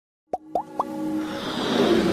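Logo intro sting: three quick pops that each glide upward in pitch, then a swelling whoosh over held tones that builds in loudness.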